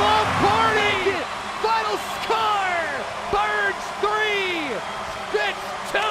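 A voice shouting in a series of short, falling calls, about one a second, over crowd noise that thins after the first second. There is one sharp knock partway through.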